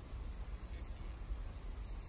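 Faint, steady low rumble of a Mk4 Volkswagen TDI driving at about 40 mph, heard from inside the cabin.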